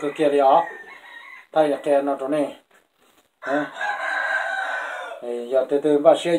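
Rooster crowing. The longest, hoarsest crow starts about halfway through and lasts nearly two seconds, with shorter calls before it.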